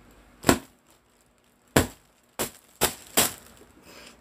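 Five sharp knocks: one about half a second in, another near the two-second mark, then three more in quicker succession over the next second or so.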